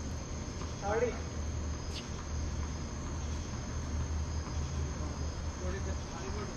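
Crickets chirring steadily at night, over a steady low hum. About a second in there is a brief voice, and about two seconds in a single sharp knock.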